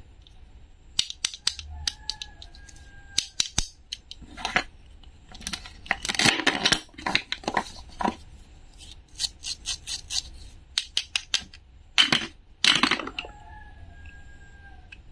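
Toy vegetables and a wooden toy knife handled on a wooden cutting board: scattered clicks and taps, with a longer rasping rip in the middle and another near the end as Velcro-joined halves are pulled apart.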